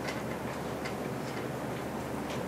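A pen writing characters on paper close to a desk microphone: short, faint scratchy strokes at irregular intervals over a steady background hiss.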